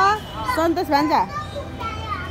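Children's voices as they talk and play, with one voice sliding sharply down in pitch about a second in.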